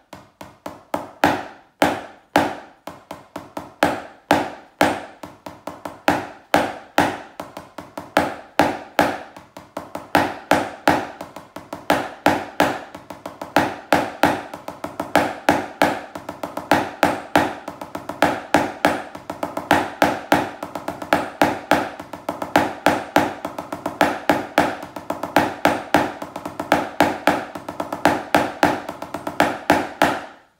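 Wooden drumsticks on a drum practice pad playing a continuous string of Basel-drumming five-stroke rolls (Fünferli): soft, close double strokes each ending in a louder accented stroke, roughly one accent every half second. The strokes grow denser after about ten seconds.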